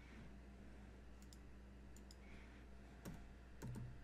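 A few faint, scattered computer keyboard keystrokes and clicks over low room hum, the two loudest near the end.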